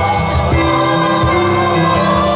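Choir singing in harmony with piano accompaniment, holding long sustained notes.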